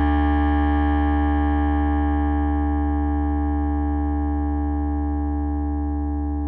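A piano chord held and slowly dying away, many notes including deep bass notes ringing together with no new notes struck.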